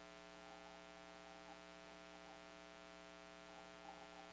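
Near silence apart from a faint, steady electrical hum with many evenly spaced overtones.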